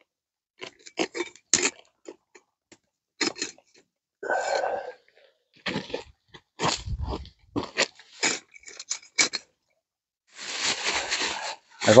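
Scattered crunches and knocks of someone moving about in rubber boots on leaf litter and stones and handling camp gear, including a low thump about seven seconds in. Near the end comes a longer rustle of a plastic bag being handled.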